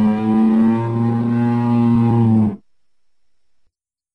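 Imagined sauropod dinosaur call sound effect: one long, low call held at a steady pitch. It wavers slightly about a second in and cuts off abruptly about two and a half seconds in.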